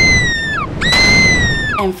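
Horror sound effect: two long, shrill shrieks of about a second each, their pitch sliding down at the end, over a low rumble.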